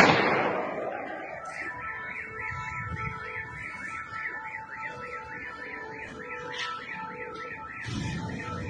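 A loud bang at the very start that dies away over about a second, then car alarms warbling steadily at about three cycles a second from cars parked near the burning wrecks.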